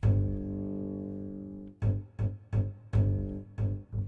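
Sampled double bass from the VSCO 2 Community Edition library. A low note rings for about a second and a half, then a run of short plucked pizzicato notes follows, about three a second.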